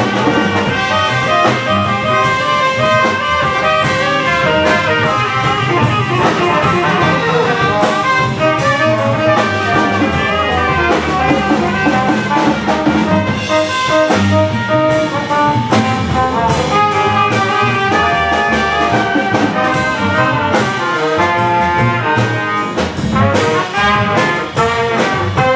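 Live jazz combo playing: saxophone, trumpet and trombone playing together over a drum beat.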